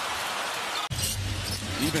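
Basketball arena crowd noise from a game broadcast. About a second in it breaks off abruptly at an edit and comes back with a deeper rumble and a few sharp knocks.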